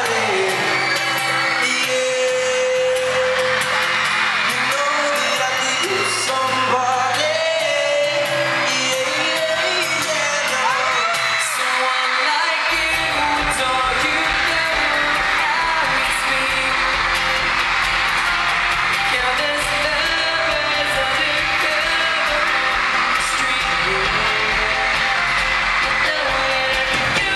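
Live pop vocals over acoustic guitar, heard from the audience, with fans screaming throughout; about halfway through, a deep bass layer comes in.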